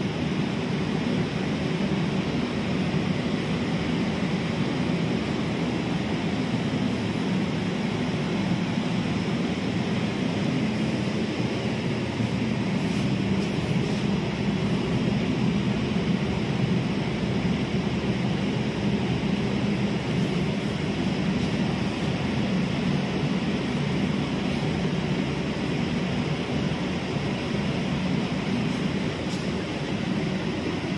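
Steady, even rushing noise with a low hum beneath it and no distinct events.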